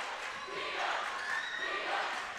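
Crowd noise in a packed school gym: many spectators talking, shouting and cheering at once, with no single voice standing out.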